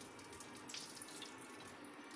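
Faint running water, an even hiss with light irregular ticks through it.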